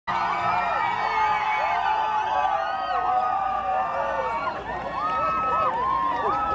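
A crowd of many voices shouting and cheering at once, with several long held cries near the end.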